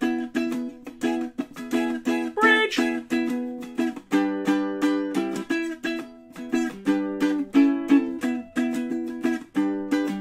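Ukulele strummed in a steady rhythm, chord after chord, without singing.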